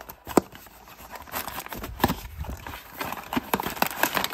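Hands handling and opening a small cardboard blind box, with cardboard knocks and scraping. A sharp knock comes about half a second in, then rustling and tapping as the end flap is worked open.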